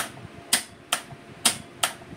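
A contactor clacking in and dropping out while the start pushbutton is pressed and released over and over: five sharp clicks, about half a second apart. The start is wired straight to the coil with no seal-in contact, so the contactor drops out every time the button is let go.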